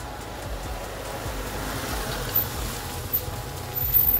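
A small Fiat Uno hatchback drives past on a dirt road: engine and tyre noise swell to a peak about halfway through, then fade as it goes by, with background music underneath.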